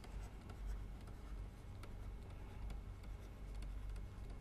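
Faint scratching and light tapping of a stylus writing by hand on a pen tablet, with a few soft clicks, over a steady low hum.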